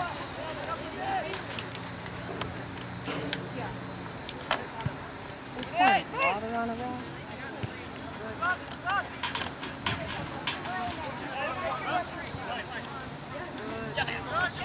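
Shouted calls from voices across an outdoor soccer field during play, short and scattered, the loudest about six seconds in and a few more around nine seconds, with a few sharp knocks in between.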